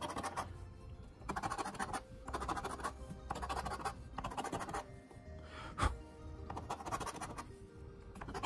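A coin scraping the latex coating off a paper scratch-off lottery ticket in repeated short passes about a second long, with soft background music underneath.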